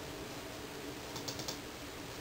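Four light, quick clicks from computer input about a second in, over a faint steady hum.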